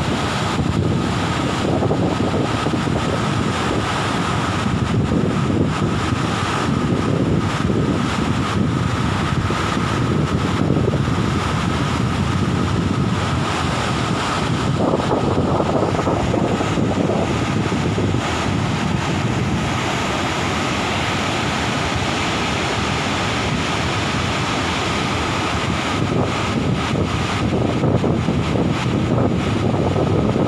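Steady rushing of a large waterfall in full flood, with wind buffeting the microphone.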